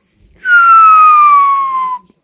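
One loud, long whistle lasting about a second and a half that slides steadily down in pitch and stops abruptly.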